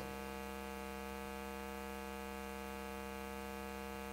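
Steady electrical mains hum from the microphone and sound system: an unchanging low drone with a buzzy edge.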